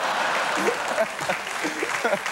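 Studio audience applauding, with scattered laughing voices over it.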